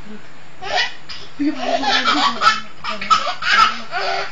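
Toddler laughing in a run of repeated bursts, starting about a second in.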